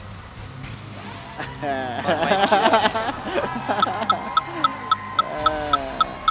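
Electronic metronome click track ticking evenly about three to four times a second through the second half, with people talking before it and a steady low hum underneath.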